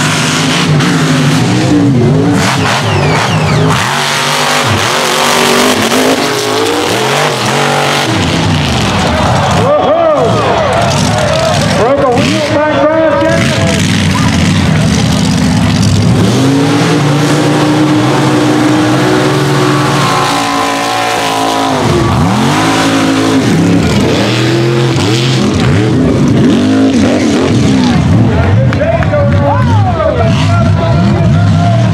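Mega mud trucks' engines running hard down the race course, the pitch climbing and dropping again and again as the drivers rev through the mud and over the jumps.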